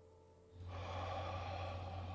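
Heavy, close-miked breathing through an open mouth, starting suddenly about half a second in over a steady low hum.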